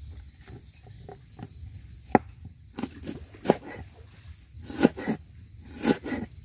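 A large knife striking a wooden cutting board in a few irregular chops, the first and loudest about two seconds in, over a steady high drone of insects.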